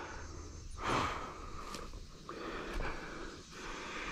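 Soft breaths close to the microphone, two gentle swells of breath noise about a second long, over a faint outdoor hiss.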